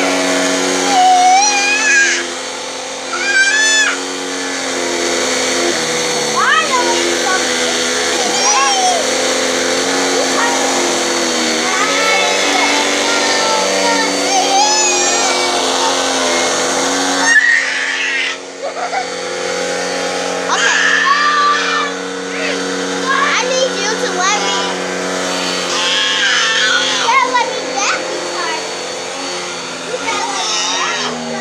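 Vacuum cleaner running steadily on carpet, its motor note shifting slightly as the nozzle moves. Over it a small child babbles and squeals.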